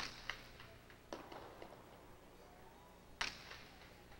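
Jai alai ball (pelota) cracking off the court's walls and floor during a rally, with echo in the big court. There are four sharp hits: two close together at the start, one about a second in, and the loudest about three seconds in.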